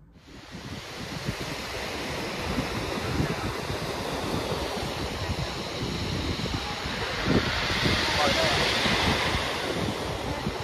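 Sea surf washing and breaking onto a beach, with wind buffeting the microphone. The sound fades in over the first couple of seconds and swells about eight seconds in.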